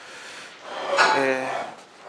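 Faint rustle of book pages being handled. About a second in, a man makes a short wordless vocal sound, a hesitating 'ehh' about half a second long that falls slightly in pitch.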